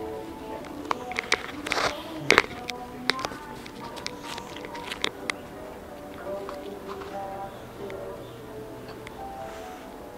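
Background music from a store's overhead sound system, with steady held notes, plus a cluster of sharp clicks and knocks in the first half, the loudest about two and a half seconds in.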